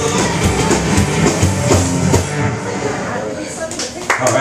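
Live rockabilly duo playing the last bars of a song on upright bass, electric guitar and a foot-pedal bass drum, with no singing. The music thins out near the end as the first claps come in.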